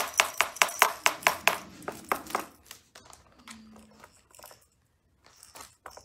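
A small plastic toy watch tapped rapidly against a plastic tray, about five clicks a second for two seconds, then a few scattered faint clicks. A puppy gives a short whine about three and a half seconds in.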